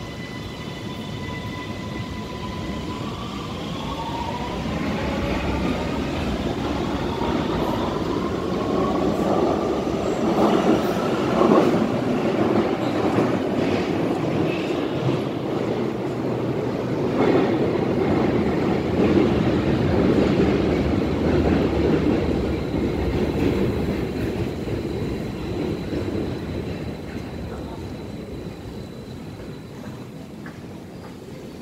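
Metro train pulling away in an underground station: the electric motors' whine rises in pitch as it speeds up, over a rolling rumble that swells, then fades as the train goes off into the tunnel.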